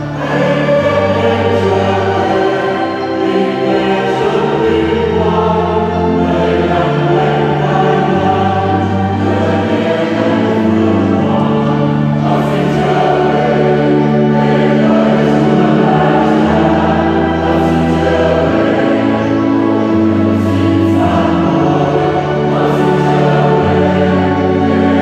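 Mixed church choir of men's and women's voices singing a Vietnamese Catholic hymn in slow, held notes.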